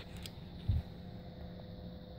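Small 12-volt computer fan running, a faint steady hum with a thin whine, blowing air through the heater's duct. A brief dull bump of handling noise comes about two-thirds of a second in.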